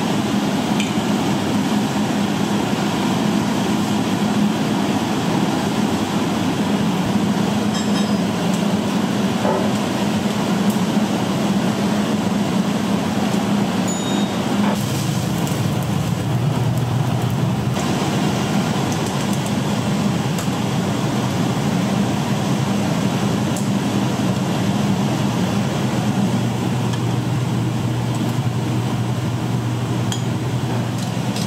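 Busy commercial-kitchen noise: a loud, steady roar and low hum from the cooking and ventilation equipment, with a few light clinks of utensils and dishes. The hum drops to a lower pitch about halfway through and again near the end.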